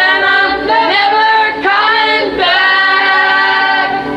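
Several voices singing held notes together, choir-like, moving to a new note every second or so as part of a music track.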